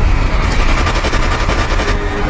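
Loud intro sound effect: a dense rumbling noise with a rapid rattle of clicks running through it, easing off slightly toward the end.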